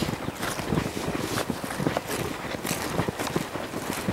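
A colt's hooves walking on grass and dirt: an irregular run of soft footfalls, mixed with a person's footsteps.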